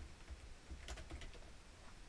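Faint typing on a computer keyboard, a short run of keystrokes about a second in.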